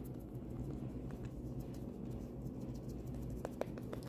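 A makeup brush brushing and patting concealer on the skin under the eye, a faint soft rustle over a low steady hum, with a few light ticks near the start and near the end.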